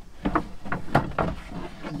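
A loose wooden board knocking and scraping against wooden cabinetry as it is worked out of its storage slot: a string of irregular knocks.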